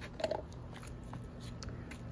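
Quiet sloshing of water as a hand moves in a plastic water table, with one short sound about a quarter second in.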